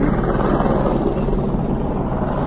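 Helicopter flying overhead: a steady, even drone of rotor and engine noise.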